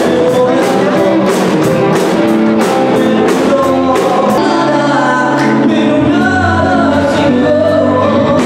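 Live rock band playing with a male singer: electric guitars, keyboard and a drum kit. The drums keep a steady beat through the first half, then thin out, while the singing carries on.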